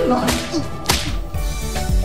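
Two sharp smacking blows in a scuffle, about a second apart, with a short cry between them. Background music then comes in.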